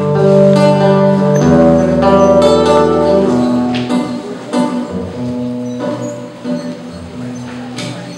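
Guitar playing slow, sustained chords, louder over the first three seconds and softer after.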